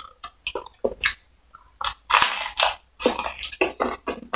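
A man biting into a piece of crispy battered fried chicken and chewing it: a run of short, sharp crunches, the loudest and densest about two seconds in.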